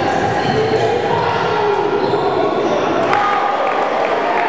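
Basketball bouncing on a hardwood gym floor during play, with voices echoing in the hall.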